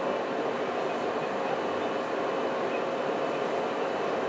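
Steady room background noise: an even hiss with a faint constant hum, like a fan or air conditioner running.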